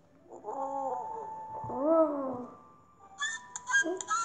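Two drawn-out, cat-like animal calls from a cartoon sound effect: the first falls in pitch, and the second rises and then falls. A light plinking tune starts near the end.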